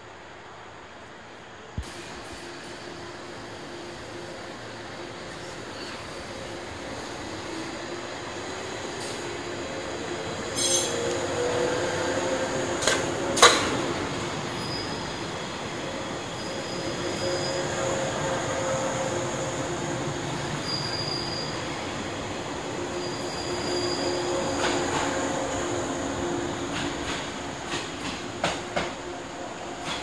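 JR 107 series six-car electric train pulling out of the station and gathering speed: a steady motor hum that rises in pitch early on, high squeals from the wheels that come and go in the middle, and wheels clacking over rail joints, coming faster near the end. A sharp knock about thirteen seconds in is the loudest sound.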